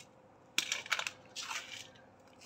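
A hand scooping dry, gritty potting mix in a basin: two short bouts of crunching scrapes, the first about half a second in.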